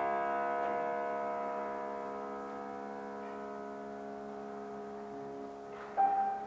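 Grand piano chord left to ring, its many notes held and slowly dying away. A new note is struck right at the end.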